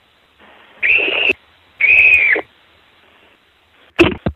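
Two short, high whistled notes about half a second apart, each rising slightly and falling away, heard through a telephone line.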